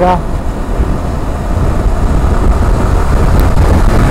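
Wind rushing over the helmet or bike-mounted microphone of a sport motorcycle at highway speed, a loud, steady low roar with the bike's engine and road noise underneath. It dips slightly about half a second in, then builds again.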